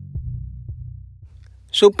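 Quiet background music: a deep, steady bass with soft thuds about every half second, fading down. A man's voice cuts in near the end.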